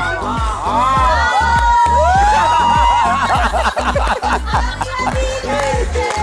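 Background music with a steady, driving beat, with a group of people shouting and cheering over it, busiest in the first half.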